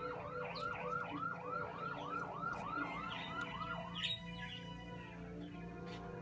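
A siren in fast yelp mode: a pitched tone sweeping down and up about four times a second, which stops a little before four seconds in. It follows a slow rising wail.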